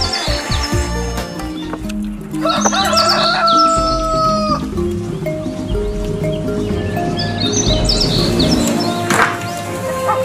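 Background music with a rooster crowing once, about two and a half seconds in, ending in a long held, slightly falling note. Faint high bird chirps come and go.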